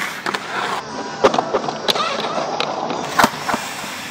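Skateboard wheels rolling on a concrete skatepark bowl, with several sharp clacks of boards and trucks hitting the concrete, the loudest about a second in and again after three seconds.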